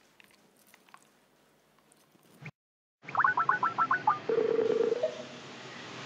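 Electronic call tones from a video-call app: a quick run of about eight short rising chirps, then a steady buzzy tone for under a second, after a couple of seconds of faint room noise and a sudden cut to silence.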